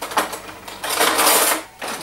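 Metal cutlery rattling in a kitchen drawer as a fork is picked out: a short clatter, then a longer one lasting about a second.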